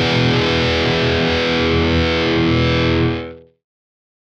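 Home-built electric guitar with humbucker pickups played through heavy distortion, a chord ringing out and then stopped, dying away quickly about three seconds in.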